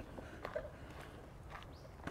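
Faint footsteps on a dirt bush track: a few soft footfalls over low outdoor background.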